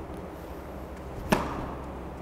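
Tennis racket striking the ball on a serve: one sharp hit a little over a second in, ringing briefly in the indoor hall.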